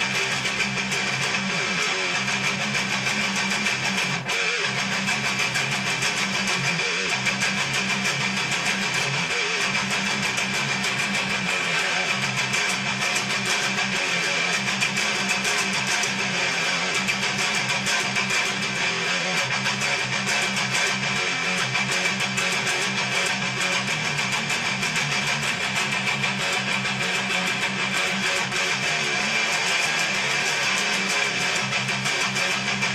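Electric guitar played with a pick in fast, continuous down-picked riffing.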